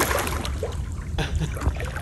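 A large fish splashing and thrashing at the water's surface, a loud splash right at the start followed by water sloshing and trickling as the swirl settles; it is taken for a carp.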